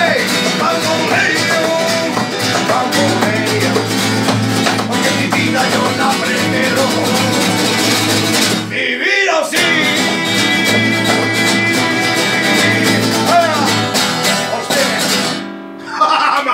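Two acoustic guitars, one of them a nylon-string classical guitar, strumming a rumba flamenca rhythm with a man singing along. The playing breaks off briefly about nine seconds in, then winds down and stops just before the end.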